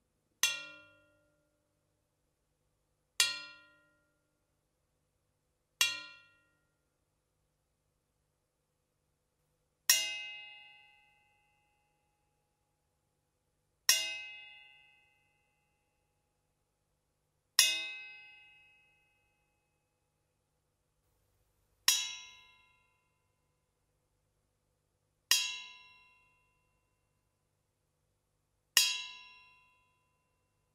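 A bare steel S-hoop snare drum hoop, held in the air, tapped with a wooden drumstick nine times a few seconds apart. Each tap gives a bright metallic ring that dies away within about a second: the extremely short sustain of an S-hoop.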